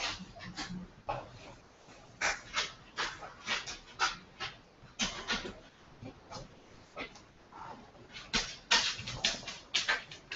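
A dog panting: quick, noisy breaths in uneven runs, a few a second.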